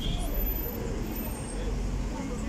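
A city bus's engine running at the kerb, a steady low rumble, over general street traffic noise.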